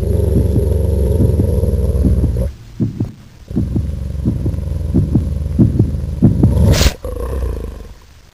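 Deep, rumbling animal growl with a pulsing grain, in two long stretches broken by a pause about two and a half seconds in, with a short bright rush near the end before it fades.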